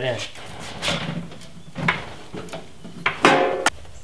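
Hydraulic floor jack being pumped by its long handle to raise the vehicle: a few scraping, creaking strokes about a second apart, the loudest near the end and ending in a sharp click.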